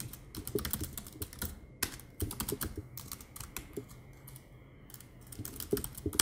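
Typing on a computer keyboard: quick runs of key clicks, a pause of about a second, then a few more keystrokes near the end.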